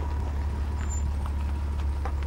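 A hearse driving slowly past, giving a steady low engine and road rumble with a hiss above it.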